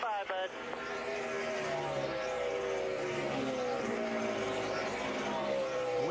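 NASCAR Cup pushrod V8 engine of a Ford Fusion race car at full throttle on its final lap, with a steady engine note that drifts slowly up and down in pitch. The car is stretching its fuel to the finish.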